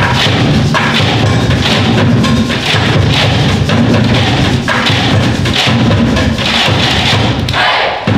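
A school concert band of wind instruments and percussion playing, with sharp, quick taps running through the music. The sound drops briefly just before the end.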